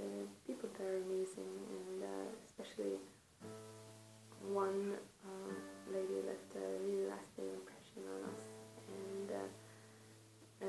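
A woman singing a slow melody in held notes to her own acoustic guitar, with low guitar notes ringing under the voice through the middle and end.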